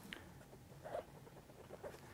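Faint handling noises from plastic air tubing being pushed into the push-to-connect fittings of a small pneumatic cylinder: a few soft scratchy sounds, near the start, about a second in and near the end.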